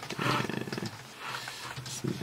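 A man's low, rasping vocal sound, growl-like and lasting under a second near the start, then fading to faint studio sound.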